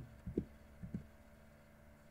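A few faint, dull low thumps in the first second over a faint steady electrical hum, then only the hum.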